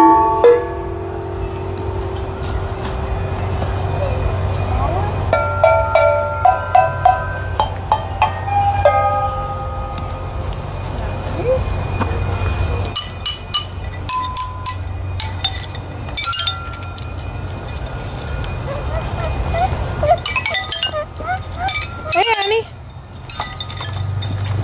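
Children striking outdoor playground musical instruments with mallets: scattered ringing pitched notes in the first half, then a run of quick, sharp clinking strikes from about halfway on. A steady low hum runs underneath.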